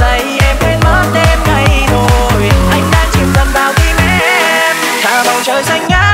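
Electronic dance remix of a Vietnamese pop song: a steady pounding bass beat under synth melody lines. A little past halfway the bass drops out and a rising sweep builds toward the end, leading into the next section.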